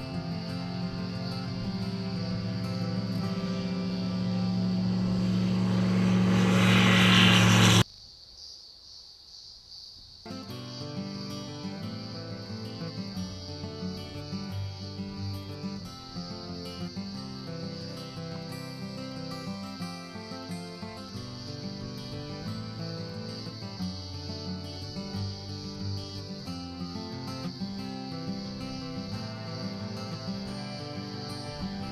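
Light aircraft engine and propeller at takeoff power, a steady drone that grows louder as the plane rolls toward the listener, then cuts off suddenly about eight seconds in. After a brief quiet gap, acoustic guitar music plays.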